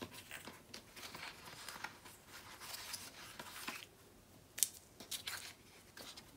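Paper and cardstock being handled and shifted on a mat, a faint rustling, with one sharp click a little past halfway and a couple of lighter ticks after it.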